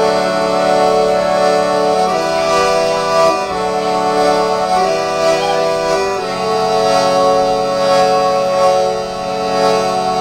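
Harmonium playing sustained chords, held for a couple of seconds, then moving to a new chord about every second and a half before settling on one long chord.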